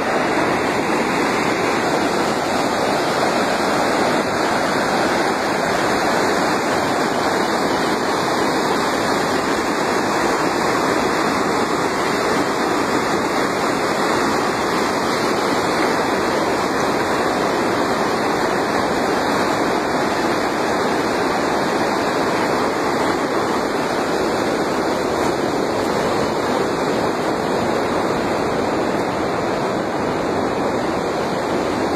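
Muddy river in full flood, its fast floodwater rushing with a steady, loud, unbroken noise.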